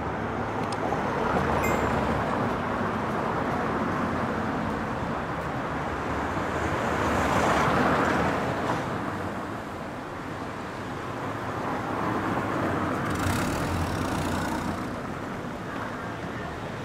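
City street ambience with a motor vehicle driving by: its engine and tyre noise swells to a peak about halfway through and fades, over a low steady engine hum.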